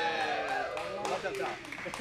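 A group of people cheering together right after a shouted toast of "salud", several voices at once, trailing off into scattered voices about a second in.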